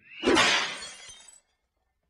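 Logo-animation sound effect: a short rising swish, then a shattering crash that fades out over about a second.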